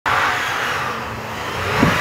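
SUV driving hard through deep snow: a loud, steady rushing noise, with the engine revving up near the end.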